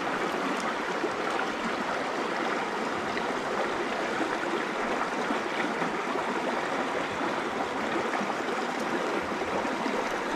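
Shallow mountain stream running over rocks and gravel close to the microphone: a steady, even rush of water.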